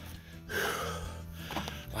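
A man breathing hard after a steep climb, with one long, heavy exhale about half a second in, over steady background music.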